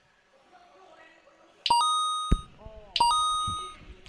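Electronic chime of an RC lap-timing system sounding twice, about a second and a quarter apart, each ringing on and fading over about a second: the system registering car transponders ahead of the heat. A short low thump falls between the two chimes.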